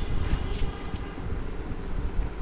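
Low rumbling soundtrack of an underwater documentary, without narration, played through a small Bluetooth speaker.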